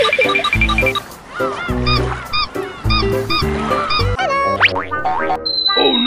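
Upbeat background music with a deep beat about once a second and short, repeated chirping notes over it; a quick rising whistle-like glide sounds about four and a half seconds in, and a long high tone starts near the end.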